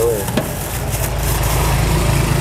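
A motor engine idling close by, a steady low rumble that grows stronger about a second in. A single sharp click comes about half a second in.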